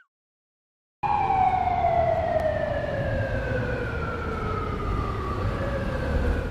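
After about a second of silence, one long tone falls slowly and steadily in pitch for about five seconds, with a low rumble beneath it.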